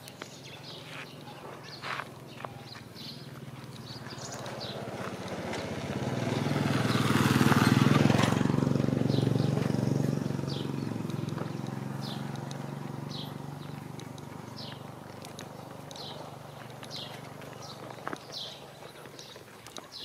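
A motor vehicle passes by: its engine grows louder over several seconds, is loudest about eight seconds in, then fades away. Short high chirps recur throughout.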